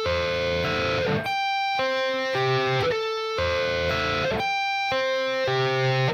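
Electric guitar playing a sweep-picked A minor 7 arpeggio twice through. The fretting fingers are left down, so the notes ring on and run into one another instead of sounding separately: the fault of not lifting off and muting each note.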